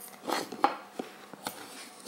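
Chunky wooden puzzle piece knocking and rubbing against a wooden puzzle board as it is worked into its slot: a few light taps about half a second apart.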